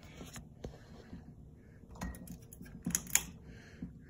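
Casablanca Lady Delta ceiling fan running with a faint steady hum, with scattered sharp clicks and taps, the loudest about two and three seconds in.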